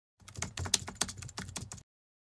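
Typing sound effect: a quick, irregular run of keyboard-like clicks, about eight a second, lasting about a second and a half.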